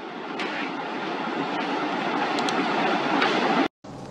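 Steady rushing background noise picked up through a video-call microphone, growing louder for about three seconds. It cuts off suddenly near the end as the microphone is muted.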